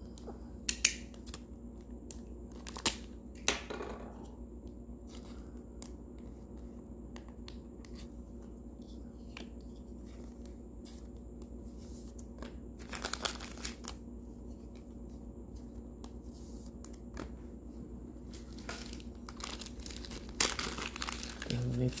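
Clear plastic bag crinkling as it is handled, alongside trading cards being shuffled. There are a few sharp clicks in the first four seconds, scattered light crackles, and louder bursts of crinkling about 13 seconds in and near the end.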